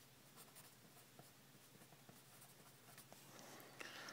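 Faint scratching of a pen writing on paper, in short irregular strokes that thicken a little near the end.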